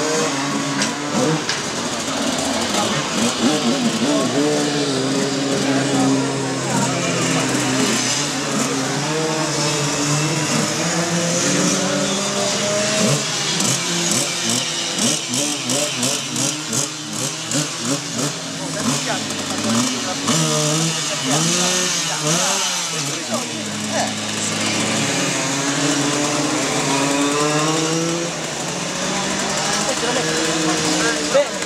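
Minimoto engines running and revving, their pitch rising and falling, under people talking.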